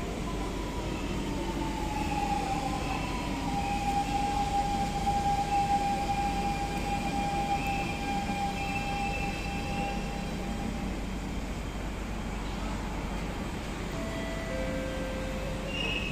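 Metro train running with a steady low rumble and an electric whine that glides slowly down in pitch and fades out about eleven seconds in.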